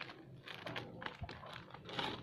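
Irregular light clicks and rustling from hands handling small medicine packaging: a wrapped syringe, a small glass vial and a cardboard medicine box.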